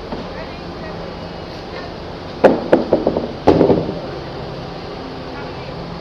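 Portable folding wheelchair ramp being unfolded and set down at a train door: two quick clusters of clattering knocks about a second apart, midway through, over a steady background hum.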